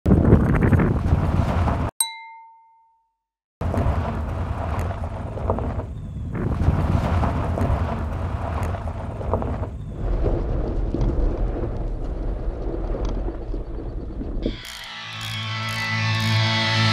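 A vehicle rolling on a dirt road with a heavy, rough rumble, cut off about two seconds in by a single ringing ding that fades into silence. A rough rumbling noise then returns for about ten seconds, and electric-guitar music starts near the end.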